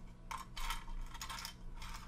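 Small rotary-tool bits and sanding drums rattling and clicking against each other and the walls of a small clear plastic box as fingers sort through them, in quick clusters of light clicks.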